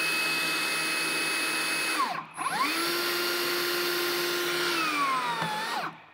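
Metabo HPT cordless rebar bender/cutter running with no rebar loaded, its bending head making a full 180-degree turn. The motor and gearbox whine steadily, stop briefly about two seconds in, then run again. The whine drops in pitch and cuts off near the end.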